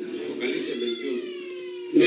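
A young child's high-pitched, drawn-out whine falling slowly in pitch for about a second and a half, over a steady low hum.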